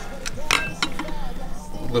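A few sharp metallic clinks from a chrome wheel center cap being handled and set down on a bench.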